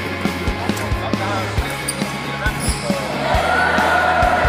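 Music with a steady bass beat and a stepping bass line, over people talking in a large hall; a held higher note comes in near the end.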